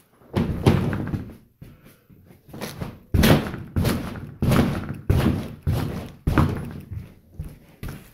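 A person jumping repeatedly on the inflated drop-stitch air floor of an inflatable catamaran: a series of heavy thuds about a second apart. The high-pressure air deck flexes some but stays impressively stiff under the jumps.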